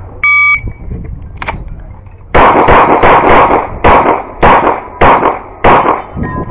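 A shot timer's electronic start beep, then about two seconds later a fast string of 9mm pistol shots from a CZ SP-01 Shadow, ending with four shots spaced a little over half a second apart.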